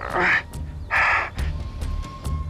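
A man crying out in pain twice, short rough yells as his hand is twisted, over background music with a low pulsing beat.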